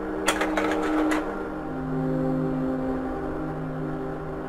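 Kodak Carousel slide projector advancing a slide, a quick run of mechanical clicks about a third of a second in, over soft sustained music that moves to a lower chord partway through.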